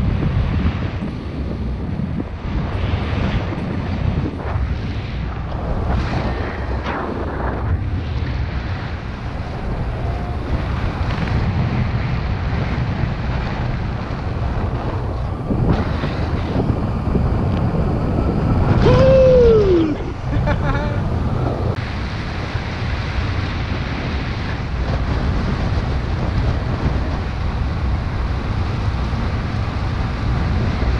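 Airflow buffeting the microphone of a camera carried on a flying paraglider pilot: a steady, rough low rumble. A little past the middle a single short tone glides downward over about a second.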